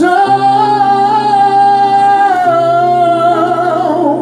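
Samba-enredo singer holding one long note with vibrato, over sustained chords from the band that change about two and a half seconds in.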